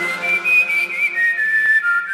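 A whistled melody line in an EDM track with the bass and drums dropped out: a single high tone with a slight waver, stepping down in pitch over a faint low drone.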